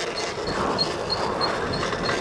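A moped's rear brake squeaking in short high chirps, about three a second, over wind and tyre noise as the moped rolls along.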